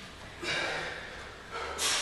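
Heavy breathing from an athlete straining through a handstand walk: two forceful exhalations, about half a second in and near the end.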